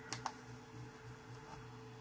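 Faint steady hum from a Creality CR-10S 3D printer, with two light clicks in the first quarter second.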